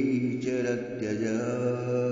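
A man's voice chanting a Sanskrit verse as a slow, drawn-out melody, holding long notes with a brief break about half a second in.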